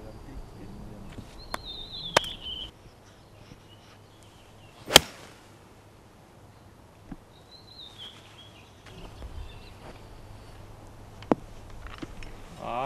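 A golf club striking the ball in a full swing: one sharp crack about five seconds in.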